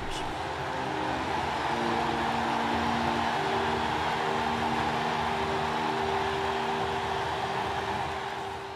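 Steady roar of a large stadium crowd, swelling gently over the first couple of seconds and then holding, with a few held low tones beneath it.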